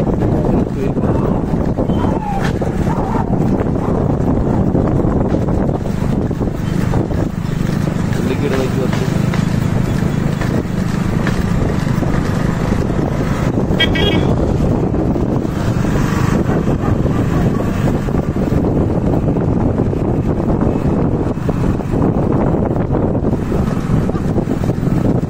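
Steady, loud running noise of a moving vehicle with wind buffeting the microphone.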